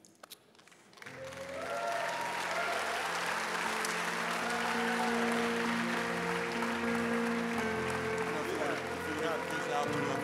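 Congregation applauding, building up about a second in and holding steady, while sustained instrumental music plays.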